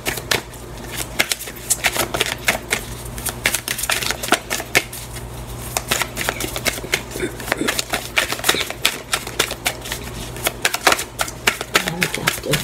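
A tarot deck being shuffled by hand: a dense run of quick, irregular card clicks and flicks, over a low steady hum.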